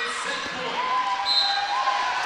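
Gymnasium crowd noise from fans and cheerleaders cheering and yelling, with a drawn-out yell in the second half.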